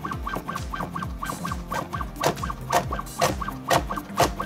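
A robotic chopper's knife slicing through a carrot onto a wooden cutting board, sharp chops about twice a second from about halfway in, over background music.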